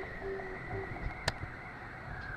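A single sharp click about a second in, over a low, steady background hiss and hum.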